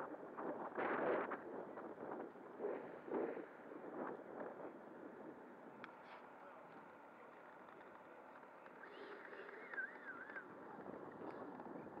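Faint outdoor ambience with indistinct voices during the first few seconds, then a low steady background and a brief warbling chirp about nine seconds in.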